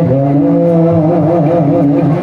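Live harmonium accompanying a man singing one long, wavering held note.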